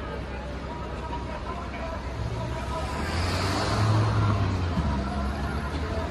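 A car drives past close by, its engine hum and tyre noise rising to a peak about four seconds in, over the steady chatter of a large crowd.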